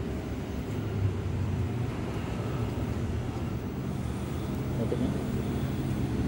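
Steady low mechanical rumble, like a running engine, with no clear breaks.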